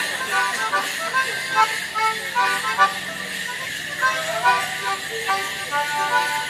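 Live folk music for a Morris dance: a reed instrument plays a tune in quick, short notes.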